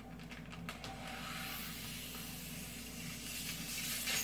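Air being sucked out of a Ziploc freezer bag through a drinking straw: a steady hiss from about a second in, after a few faint clicks, as the bag is vacuum-packed tight around the steak.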